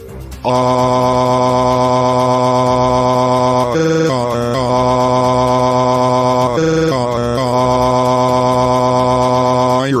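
A man's voice holding one long, drawn-out 'aaaah' scream on a flat, steady pitch. It breaks into short stuttering wobbles about 4 and 7 seconds in, then settles back on the same note.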